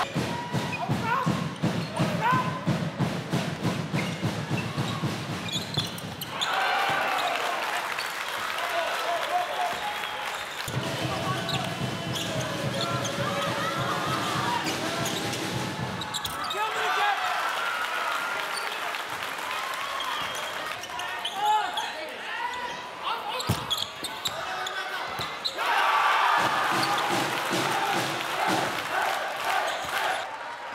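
Basketball game broadcast sound: a ball bouncing on a hardwood court and a crowd in a large hall, with a commentator talking over it. A dense low rhythmic pulsing runs through the first six seconds and again in the middle.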